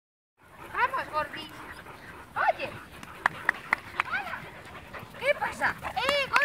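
Several dogs barking and yelping excitedly in short, high-pitched bursts, with a quick run of three sharp yips around the middle.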